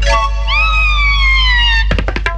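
Cartoon falling sound effect: a whistle-like tone rises briefly, then slides steadily down in pitch for over a second over background music. It ends in a sharp crash near the end as the clay water pot hits the ground and breaks.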